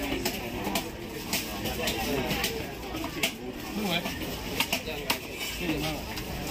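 A knife striking and scraping a small grouper on a wooden chopping block: irregular sharp knocks, a few close together, over background voices.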